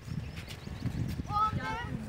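A child's voice calling out near the end, over low, irregular knocking and rustle.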